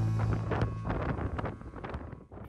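A sustained chord of background music fading out in the first moments, giving way to wind buffeting the microphone on a sailing yacht's open deck.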